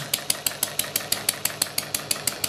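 Model sideshaft hit-and-miss gasoline engine running steadily with its governor not yet connected, so it runs without missing: a rapid, even beat of about a dozen sharp clicks a second.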